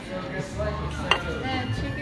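Restaurant dining-room background: a low murmur of voices with a steady low hum, and a single sharp clink of tableware about a second in.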